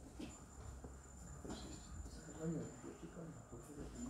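A steady, thin high-pitched tone comes in just after the start and holds unchanged, with faint low voices murmuring beneath it.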